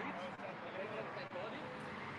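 Faint steady hiss of street traffic, with a car driving past on the road.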